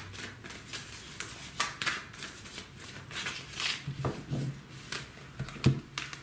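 A deck of tarot cards being shuffled by hand: irregular quick flicks and slides of the cards, with one sharper knock near the end.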